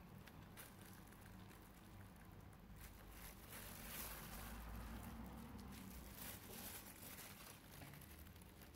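Near silence with faint handling sounds: plastic-gloved hands working a cookie press and setting soft cookie dough pieces onto a greased metal baking tray, with soft rustles and light clicks, a little more in the middle.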